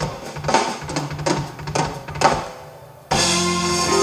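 Live band's drum kit and percussion playing a break of separate sharp hits that die away, then the full band with horns comes back in suddenly about three seconds in.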